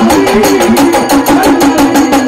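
Live Gondhal devotional folk music: percussion keeps a fast, even beat of several strokes a second under a held melodic tone.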